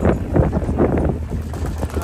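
Wind buffeting the microphone aboard a moving boat, in uneven gusts over a low steady drone.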